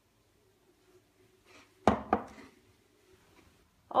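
A sharp knock about two seconds in, followed by a lighter one, over a faint steady hum.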